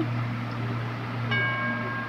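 A single bright, bell-like metallic ring sounds about a second and a half in and holds steady to the end, over a continuous low hum.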